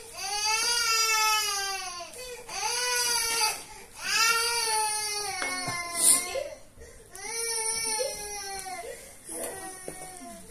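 Baby crying in about five long wails with short breaths between, each rising and then falling in pitch. A brief sharp click cuts in about six seconds in.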